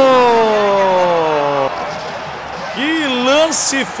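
A male football commentator's voice: one long drawn-out shout whose pitch falls steadily for about a second and a half. After a short lull, excited commentary comes in near the end.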